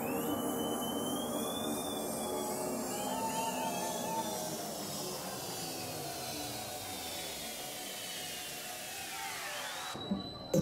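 Psytrance track in a breakdown with the kick and bass dropped out, leaving only synthesizer effects: several sweeps falling in pitch and a warbling synth tone a few seconds in, the whole fading slowly.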